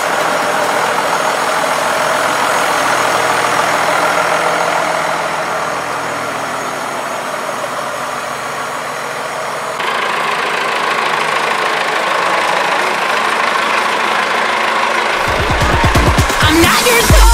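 Diesel engine of a Fendt Favorit 712 Vario tractor idling steadily. About ten seconds in the sound cuts to another take of a tractor idling, slightly louder.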